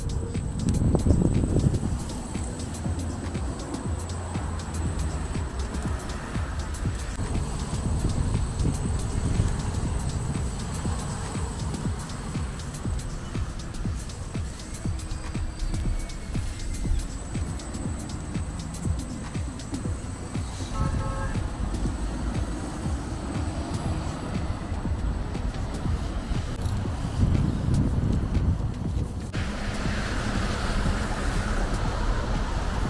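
Road traffic on a busy city avenue, heard as a steady rumble, with music faintly under it. A short beeping sound comes about 21 seconds in.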